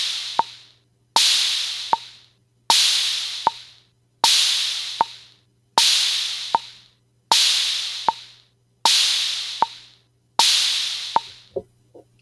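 Drum machine loop at 78 bpm: an open hi-hat hisses and fades out every two beats, about every second and a half, over a short dry bongo tap on every beat. The hi-hat lasting two beats sounds out half notes against the bongo's steady pulse. The loop stops shortly before the end, over a faint steady hum.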